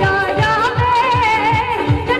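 A woman sings a Punjabi song live into a microphone, her voice wavering through ornamented notes over band backing of keyboards and a drum beat of low strokes that fall in pitch.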